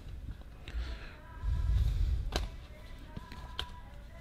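A car's logbook wallet and service booklet being handled on a leather seat: paper and folder shuffling, with a low rumbling swell about a second and a half in and a couple of light taps.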